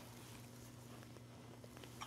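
Near silence: room tone with a faint low steady hum and a few faint ticks.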